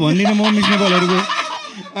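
A man's loud, drawn-out cackling laugh on one held pitch, fading after about a second and a half.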